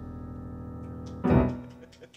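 A jazz band's closing chord, led by a keyboard piano, held and ringing. A little over a second in, the full band strikes a final accent, which then dies away.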